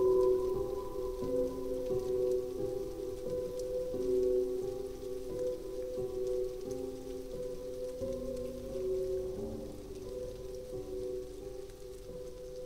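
Slow, sad piano music with long held notes over a soft rain sound, the whole mix growing gradually quieter.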